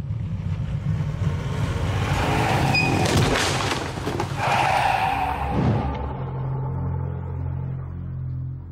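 A car rushing by at speed in a dramatised hit-and-run sound effect: a swell of engine and road noise that is loudest through the middle, with a few sharp hits about three seconds in, over a low rumbling drone. The noise eases off near the end.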